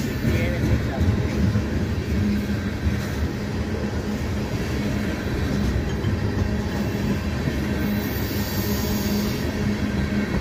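Freight train tank cars rolling past: a steady rumble of steel wheels on the rails with a constant low hum. A brief high hiss comes about eight seconds in.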